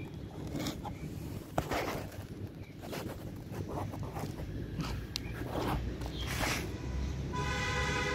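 Scattered soft clicks, rustles and scuffs of a handheld camera being moved and footsteps on a concrete rooftop, over a low background rumble. Near the end a steady pitched tone starts.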